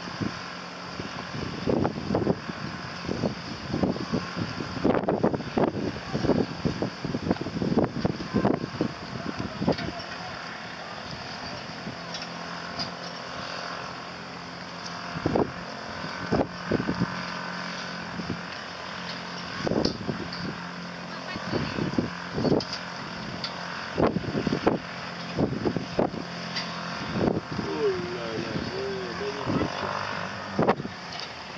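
Wind buffeting the microphone in irregular gusts, over a low steady hum from an outboard-powered inflatable boat.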